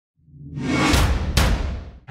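Intro sting of a news show's animated title card: a swelling whoosh over a deep rumble, with two sharp hits about a second in, fading out near the end.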